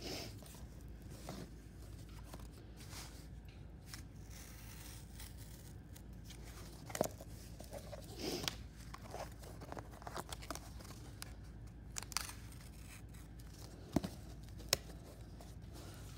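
X-Acto knife cutting through cardboard while the cardboard is flexed and handled to free a cut-out that is still caught on the back. Faint, scattered short scrapes and crackles over a low steady hum.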